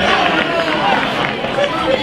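Football crowd and players' voices: a steady babble of overlapping shouts and chatter, with no single voice standing out.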